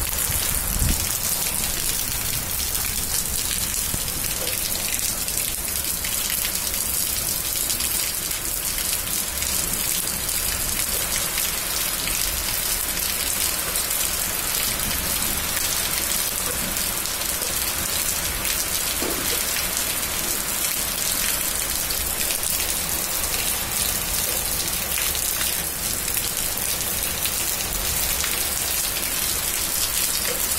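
Heavy rain falling steadily onto a flooded tiled yard, splashing into the standing water.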